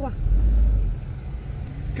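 Low rumble of a car's engine and tyres heard from inside the cabin as it rolls slowly forward, deepest and loudest in the first second.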